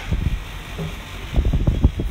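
Low rumbling and short knocks on a phone's microphone as the handheld phone is moved about, with a brief snatch of voice.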